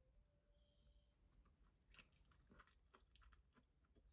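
Very faint eating sounds: soft chewing and light clicks of a metal spoon and chopsticks on ceramic bowls, coming more often in the second half. There is a brief ring about half a second in.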